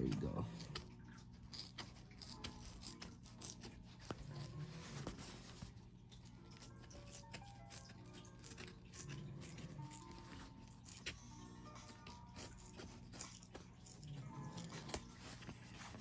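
A plastic blister pack being cut and pried open with a knife, heard as faint scattered clicks and crinkles, over quiet background music.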